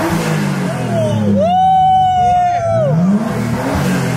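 Newly swapped Nissan RB25 turbocharged straight-six in an R32 Skyline, running and being revved; the revs rise and fall back, then climb again near the end. Near the middle, a long, high held whoop from an onlooker sounds over the engine.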